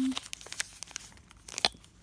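Thin plastic wrapper being torn and crinkled open by hand, a run of small crackles with a sharper crackle a little past one and a half seconds in.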